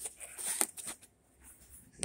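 Handling noise: light knocks and rustling as tools are set into a foam-lined tool case, mostly in the first half-second or so, then quieter.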